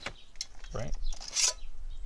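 Stainless steel canteen pulled out of its nesting steel cup: a few light metal clicks, then a short scrape of steel sliding on steel about one and a half seconds in.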